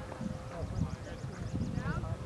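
Outdoor field ambience: wind rumbling on the microphone, faint distant voices, and a quick run of faint high chirps about a second in.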